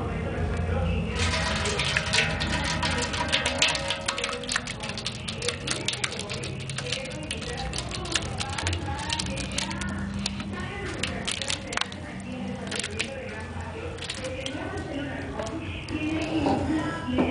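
Very thick chile de árbol and oil sauce being scraped with a plastic spatula out of a bowl into a stainless-steel hopper: a dense, irregular run of sharp sticky clicks starting about a second in and thinning out near the end, over a steady low hum.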